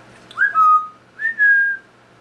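Congo African grey parrot whistling two clear notes. Each note slides quickly up into a held tone, and the second is higher than the first.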